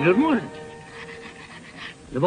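A brief vocal sound from a man, pitch rising then falling, right at the start, then a quiet stretch of soundtrack hiss with a faint steady hum.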